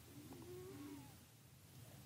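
Near silence: room tone in a pause of speech, with a faint, brief pitched sound in the first second.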